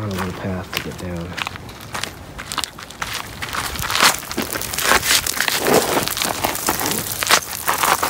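Footsteps in sandals crunching and scraping on loose gravel and broken concrete rubble while scrambling down a steep slope, with many irregular crackles that grow denser and louder after the first few seconds. A brief voice sound comes near the start.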